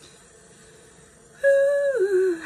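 A high, voice-like tone held for about half a second near the end, then gliding down in pitch, after a stretch of near-quiet room tone.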